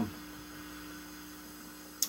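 Steady low electrical hum with a faint hiss underneath: room tone with no other sound.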